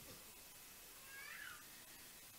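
Near silence, with one faint, short high call about a second in that falls in pitch.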